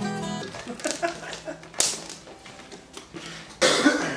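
A strummed guitar chord rings and stops about half a second in, followed by scattered clicks, knocks and handling noises in a small room, with a loud rough burst near the end.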